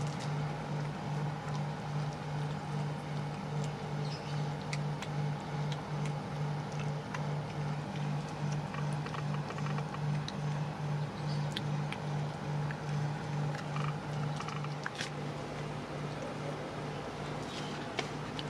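A steady low mechanical hum that pulses evenly about two to three times a second, with scattered faint clicks from a kitten chewing boiled corn kernels.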